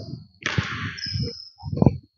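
Basketball dribble and footsteps on a hardwood gym floor: a few dull thuds, with a heavier thud near the end. Partway through there is a rush of noise with a brief high sneaker squeak.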